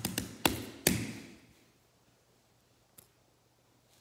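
A hand knocking on a silicone pop-it fidget toy and the table under it: four quick sharp taps in the first second, the last one trailing off. It then goes quiet, with one faint tick about three seconds in.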